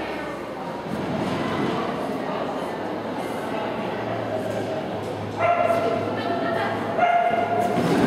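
A dog barking and yipping in high-pitched calls as it runs an agility course, louder in the second half.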